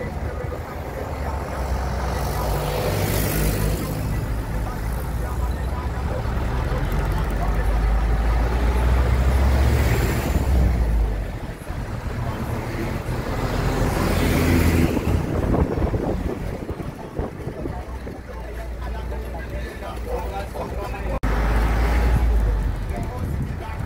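Engine rumble and road noise heard from aboard a moving bus, with other vehicles swelling past a few times.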